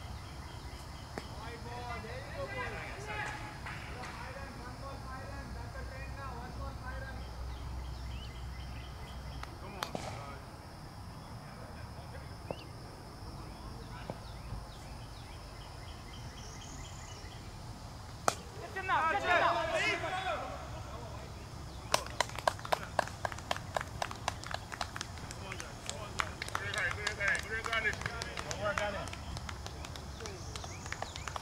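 Players' voices calling out across an outdoor cricket field. A sharp knock comes a little past the middle, then a quick run of sharp claps, about three a second, for several seconds near the end.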